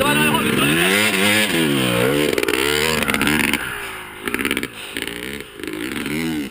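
A small dirt bike engine revving close by, its pitch rising and falling again and again. About three and a half seconds in it drops away in loudness as the bike rides off, with fainter revs from farther away.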